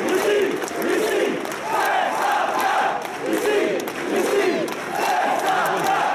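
Rugby stadium crowd cheering and shouting after a home try, many voices at once, swelling in repeated waves.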